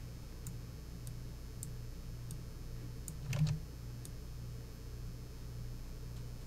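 Quiet room tone: a steady low hum with a few faint light clicks from a computer mouse used for drawing, and one short soft sound a little after three seconds in.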